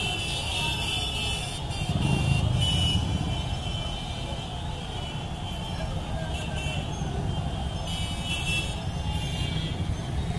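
Dense, continuous engine noise from a large crowd of motorcycles riding past together, with steady high tones, likely horns, sounding over it.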